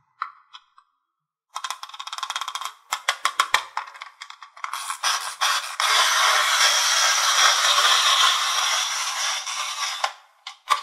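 Plastic wind-up mouse toy: rapid ratcheting clicks as its key is wound, starting about a second and a half in, then a steady whir of its clockwork spring motor running for about five seconds before it stops near the end.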